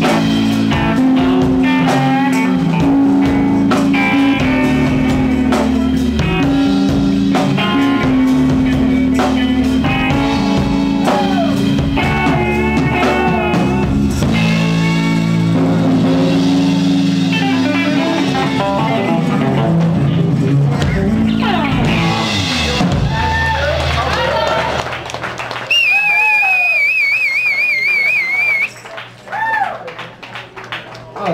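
Live band of drum kit, electric guitars and bass guitar playing a steady groove together, then coming to a stop about 24 seconds in. Near the end a high, wavering tone is held for a couple of seconds, with short shouts from voices around it.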